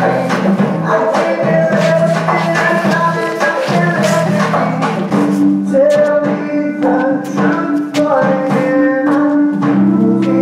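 Music playing: a song with held melodic notes over a steady run of percussion hits.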